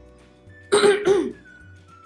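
A woman clears her throat once, a short rough burst a little under a second in, over faint background music.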